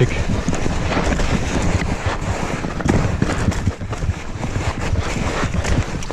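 Electric mountain bike riding downhill over a snowy, rutted trail: wind buffeting the microphone, with the tyres rumbling and the bike rattling and knocking over the bumps.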